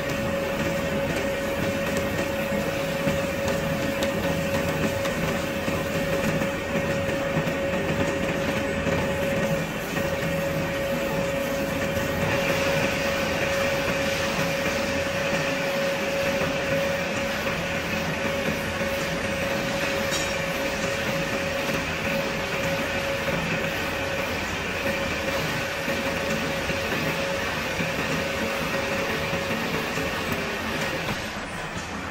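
Drill press running under load, its large twist drill boring into a solid steel shaft: a steady mechanical drone with a constant whine, turning a little harsher about twelve seconds in.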